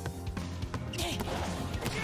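Anime episode soundtrack: background music under a volleyball rally, with a sharp hit of the ball about a second in.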